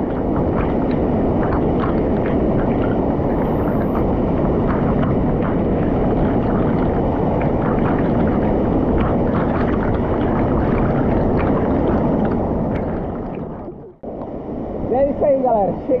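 Waterfall crashing into a rock pool, a loud steady rush heard from a camera held at the water's surface, with water slapping and splashing close to the microphone. The rush dies away sharply about fourteen seconds in.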